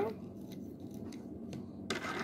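Small objects being handled on a desk: a few faint clicks and light rustling, with a short louder rustle near the end.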